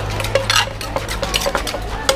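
Pestle and spoon knocking and scraping against a clay mortar as papaya salad (som tam) is pounded and tossed, in quick irregular strokes about four or five a second.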